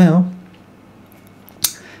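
A man's voice finishing a word, then a pause of quiet room tone broken about a second and a half in by one brief, sharp mouth noise, just before he speaks again.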